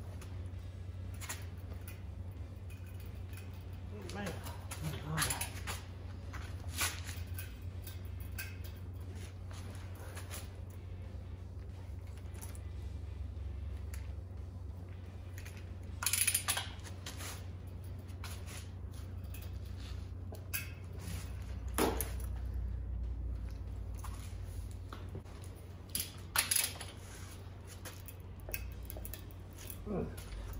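Scattered short metallic clinks and knocks from a torque wrench and socket being pulled on a harmonic balancer bolt, the sharpest about halfway through, over a steady low hum. The wrench is failing to click at its setting.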